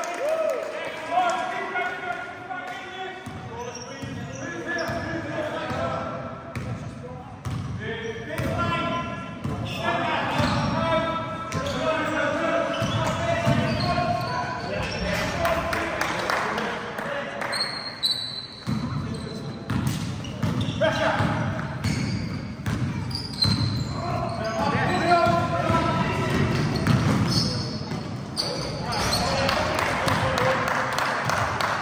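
Indoor basketball game: a basketball bouncing on the hard court floor, short high squeaks of sneakers, and players' indistinct shouts, all echoing in a large sports hall.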